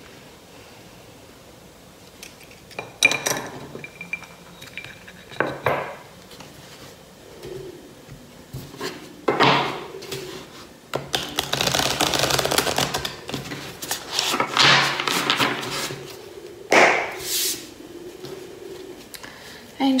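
Tarot cards being shuffled by hand on a tabletop: after a few quiet seconds come several sharp clatters and knocks, then two longer stretches of dense rustling as the cards are slid and mixed across the table.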